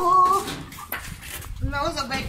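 Dogs whining and whimpering in short, high, wavering calls: one right at the start and another shortly before the end.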